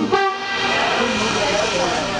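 Trombone playing a live jazz solo in long held notes that bend and slide in pitch, over a small band of electric guitar, upright bass and drums.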